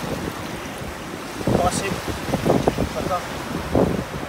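Surf washing over wet sand with wind rumbling on the microphone; it gets louder and choppier about a second and a half in.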